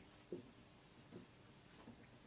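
Faint strokes of a felt-tip marker writing on a whiteboard, a few short scratches against low room tone.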